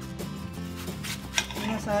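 Kitchen knife cutting into a peeled onion on a cutting board, with a sharp knock of the blade on the board about one and a half seconds in.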